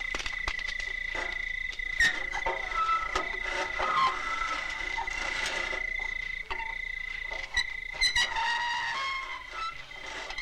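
Night ambience: a steady, continuous high trill of night insects, with scattered soft clicks and a few short pitched calls.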